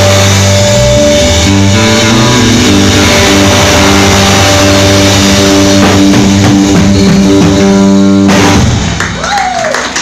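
Live rock band of electric guitar, bass and drums with cymbals holding the drawn-out closing chords of a song. The band stops together abruptly about eight seconds in, and a voice whoops just after.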